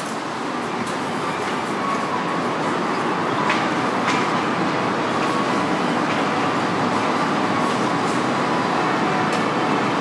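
Steady rushing background noise with a faint hum, swelling slightly at first, broken by two light clicks about three and a half and four seconds in.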